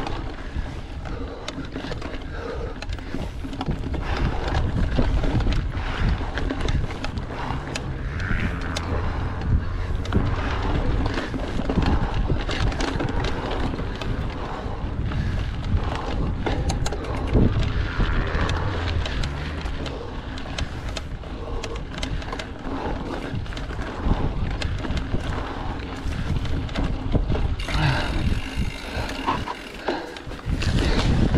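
Mountain bike ridden over a dirt forest trail: knobby tyres rumbling over roots and loose ground, with many small knocks and rattles from the bike, and wind on the microphone.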